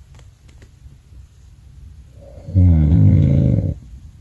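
A man snoring in his sleep: one loud, deep snore lasting just over a second, beginning past the halfway point.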